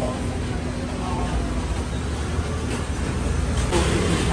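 Street traffic noise: a steady low rumble of road vehicles, with a steady hum that stops about one and a half seconds in.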